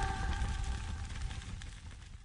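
End of a pop song: the last chord's ringing tail and low bass die away, getting steadily quieter.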